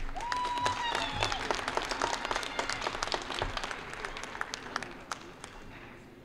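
Audience clapping for a couple as they are presented, with a short high cheer about a second in. The clapping thins out and fades away about five seconds in.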